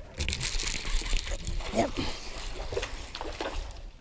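Hooked bass thrashing at the water's surface as it is fought to the boat: a run of irregular splashes and sloshing.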